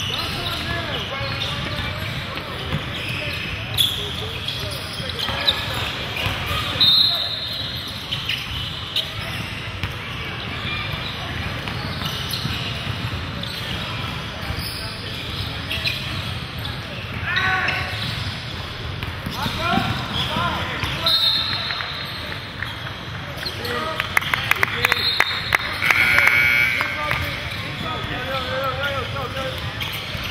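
A basketball being dribbled and sneakers squeaking on a hardwood court during a game in a large gym, over the voices of players and spectators. Short high squeaks come now and then, with a run of quick bounces about three-quarters of the way through.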